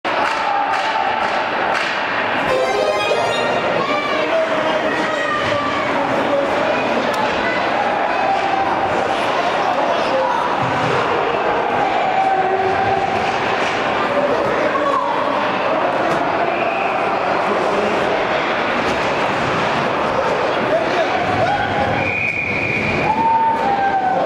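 Ice hockey rink: indistinct shouts and chatter from players and spectators, with scattered knocks of sticks and puck. Near the end a referee's whistle blows once for about a second, stopping play.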